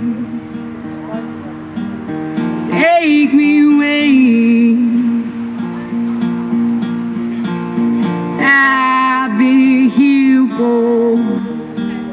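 Acoustic guitar strummed steadily under a young man's singing voice. The voice comes in with drawn-out, wavering notes, briefly about three seconds in and at more length from about eight seconds.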